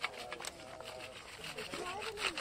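Faint voices of people talking at a distance, with a run of short clicks and rustles close by.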